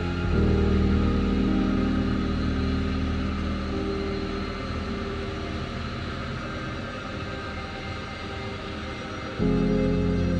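Background music of held, low notes that swells in at the start and slowly fades, then breaks off abruptly into louder music near the end.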